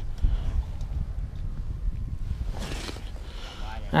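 Low, uneven rumble of wind buffeting the microphone, with a faint voice briefly a little before the end.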